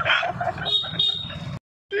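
A man laughing over a low, steady buzzing hum, with a brief high tone about half a second in. The sound cuts out abruptly near the end.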